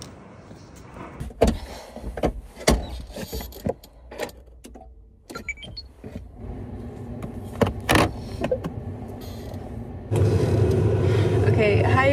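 Footsteps, then a string of knocks and clicks as someone gets into a car and handles the door and seatbelt. About ten seconds in, a steady low hum starts as the car is switched on.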